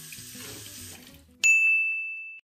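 Tap water running into a tiled sink. About one and a half seconds in, a single loud bell-like ding, a chime sound effect, cuts in and rings on.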